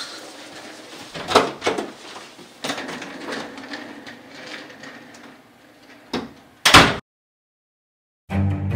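Knocks and scuffs of someone leaving through a door with a wheeled suitcase, then a loud door thud near the end, after which the sound cuts off to silence.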